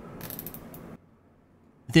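Small nylon zip tie being pulled tight through its ratchet head: a quick run of fine clicks lasting under a second.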